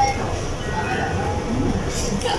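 Fast-food restaurant background: a steady low rumble with faint voices chatting.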